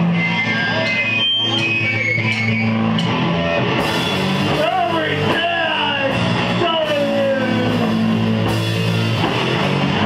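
Live band playing loud heavy rock: distorted electric guitars, bass and drum kit, with a singer's voice over it from about halfway through.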